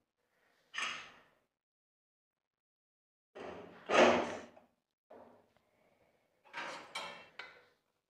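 A pressure cooker and a metal ladle being handled: a few short metallic scrapes and clatters, the loudest about four seconds in, as the ladle scoops through the boiled chickpeas in the pot.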